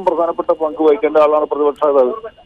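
A man speaking continuously over a narrow-band phone or studio line.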